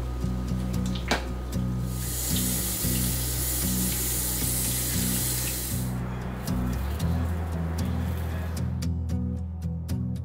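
Background music with a steady, repeating bass line. From about two to six seconds in, a kitchen tap runs water into a stainless-steel sink over it.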